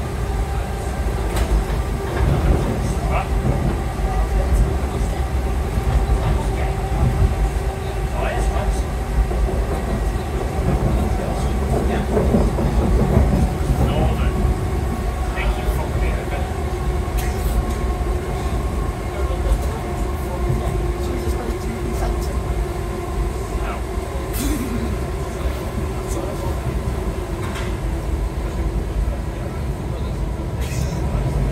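Interior running noise of a Class 508 electric multiple unit under way: a continuous rumble of wheels on rail with a steady hum, broken by scattered sharp clicks from the track.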